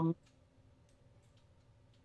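Near quiet, with a few faint scattered clicks, after a drawn-out spoken 'um' trails off right at the start.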